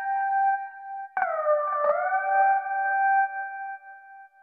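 Rhodes electric piano from FL Studio Mobile's DirectWave sampler playing held chords through its effects chain. A new chord comes in about a second in, its notes sliding into pitch before holding steady.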